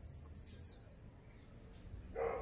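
A small bird chirping faintly in the background: a rapid trill of high notes that ends in a downward-sliding note about half a second in, then only faint room tone.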